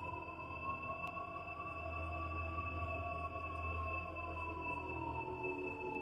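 Sustained synthesizer pad: a held tone that slowly bends up and then back down, over a low bass drone, with a thin steady high tone above.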